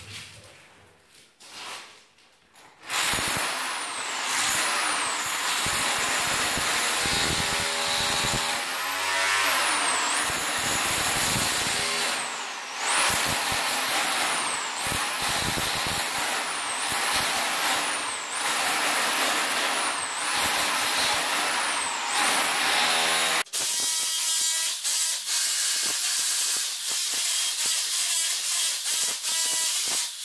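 Electric rotary hammer chiselling out a concrete floor, starting about three seconds in and running in long spells, its motor whine rising and falling as the trigger is worked. About 23 seconds in the sound changes abruptly to a steadier, more even hammering.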